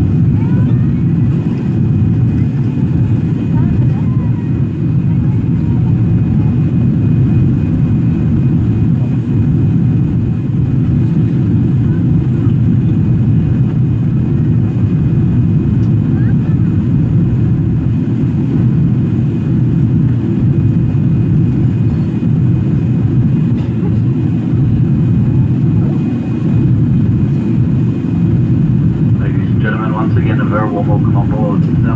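Steady cabin noise inside a jet airliner during the climb: an even, low roar of engines and airflow through the fuselage, without change.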